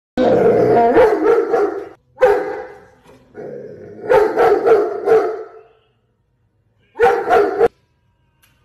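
A large dog barking in rapid volleys of several barks each, in four bursts with short silent pauses between them.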